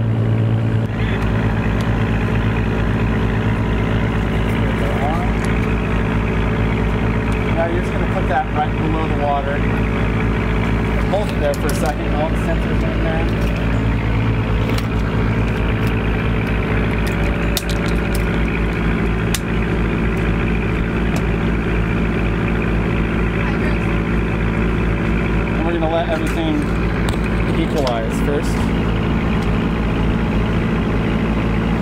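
A research boat's engine running steadily, a low even drone with a constant pitch.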